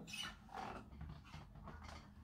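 Faint, irregular knocks and rustles of an acoustic guitar being handled as it is lifted and set down on a guitar stand.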